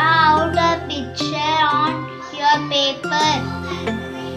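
A young girl singing a melody with held, wavering notes over steady instrumental backing music.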